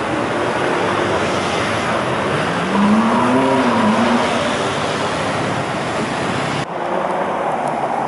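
Busy city street traffic noise from cars, scooters and buses. About three seconds in, one engine rises and then falls in pitch as it accelerates past, the loudest moment. Near the end the traffic noise drops abruptly to a thinner mix.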